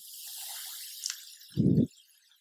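A soft breathy exhale close to a headset microphone, with a faint click about a second in, then a brief low hum of the voice near the end.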